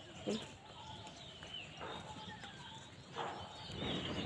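Outdoor ambience of small birds chirping in short high calls, with a few brief soft knocks or rustles.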